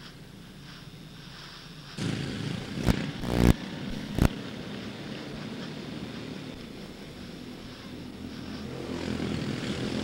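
Quarter midget race cars' Honda 160 single-cylinder engines running together, a steady drone that grows louder toward the end as the pack comes around. A few loud sharp bursts between about two and four seconds in.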